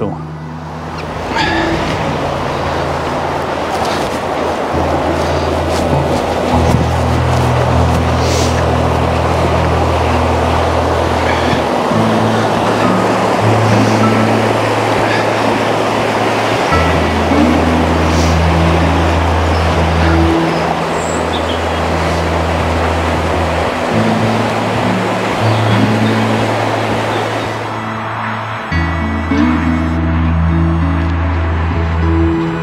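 Background music of slow, held low notes changing every few seconds, over the steady rush of a shallow river running fast over rocks. The water sound fades out near the end while the music carries on.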